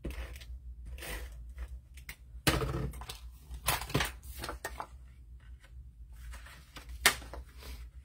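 Tape runner laying short strips of adhesive onto cardstock with brief rasps, then a cardstock panel set down and pressed on, with a few sharp taps and paper rustles. The loudest rasp comes about two and a half seconds in, and a sharp tap about seven seconds in.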